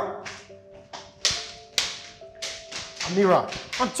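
Footsteps on a hard floor, even sharp taps about two a second, over soft background music with held notes.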